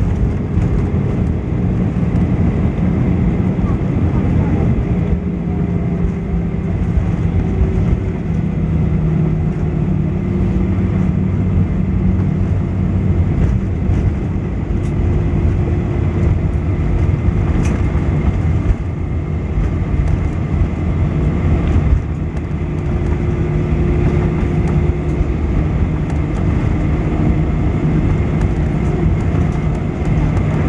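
Cabin noise inside an Airbus A320 rolling on the ground after landing: a loud, steady low rumble from the wheels and airframe, with the engines' hum holding a few faint tones that drift slightly in pitch.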